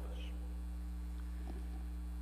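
Steady low electrical mains hum in the sound feed.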